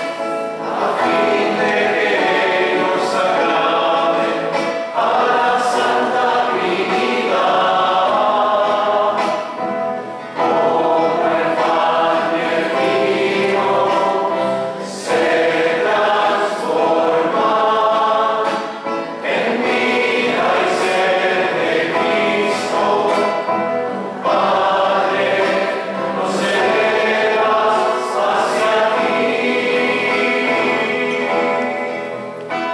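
A choir singing a hymn, in phrases of about five seconds with short breaks between them.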